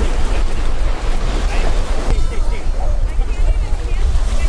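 Ocean surf breaking on the shore, with wind rumbling on the microphone and a few high children's voices calling now and then.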